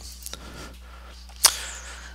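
A single sharp click about one and a half seconds in, over a low steady hum: a computer mouse click moving to the next picture in a photo viewer.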